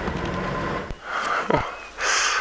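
Open safari game-drive vehicle's engine running steadily as it drives slowly away; the sound stops abruptly about a second in. It is followed by short breathy sounds.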